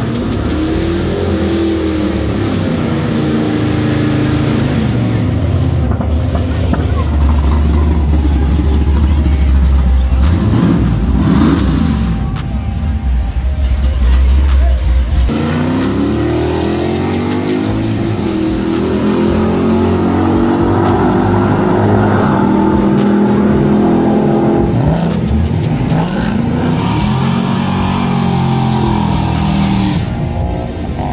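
Drag-racing cars and trucks running at the strip, engines revving and launching, with music mixed underneath. The sound changes suddenly about halfway through.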